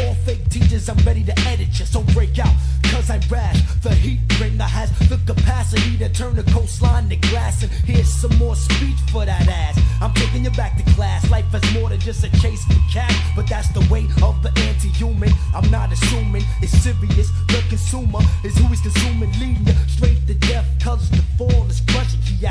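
A 1990s underground hip-hop track playing: rapping over a steady drum beat and a deep, repeating bass line.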